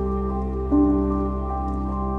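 Soft, slow background music: held keyboard-like notes, with a new note coming in about three-quarters of a second in.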